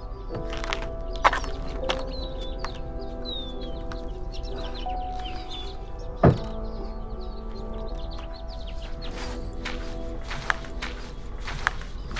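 Background music with sustained chords; about six seconds in, an SUV door is pushed shut with a single solid thunk.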